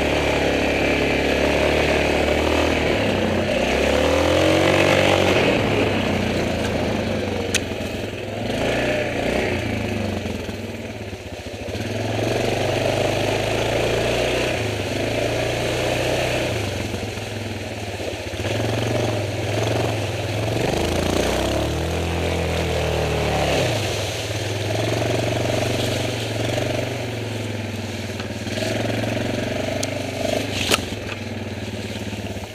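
Yamaha Grizzly 450 ATV's single-cylinder engine running while riding, its pitch rising and falling with the throttle, easing off briefly about eleven seconds in.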